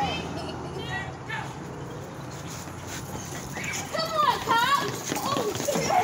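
High voices calling out down the street, briefly about a second in and then louder from about four seconds in, over a low steady rumble.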